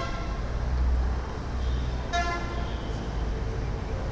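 Steady low rumble with a short, high-pitched, horn-like toot about two seconds in.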